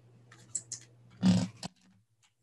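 A few light computer mouse clicks, then a short, loud breathy vocal noise close to the microphone, like a sniff or snort, about a second and a quarter in, followed by one more click.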